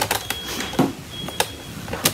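Two light clicks about half a second apart, over soft handling noise, as a small brad fastener and the fabric panel are worked onto the rim of a woven wood-splint basket.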